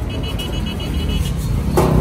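Steady low rumble of a vehicle engine running, with a quick run of short high-pitched beeps lasting about a second near the start.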